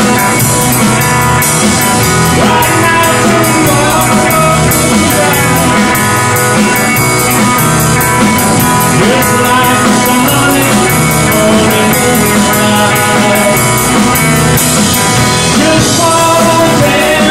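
Live band playing an upbeat song: electric guitar over a drum kit keeping a steady beat.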